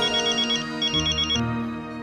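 Mobile phone ringing: a high, warbling electronic trill in short bursts, heard twice before it stops about a second and a half in.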